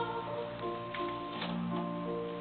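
Instrumental accompaniment to a sung sacred piece, playing held notes that step from pitch to pitch, with two faint clicks around the middle.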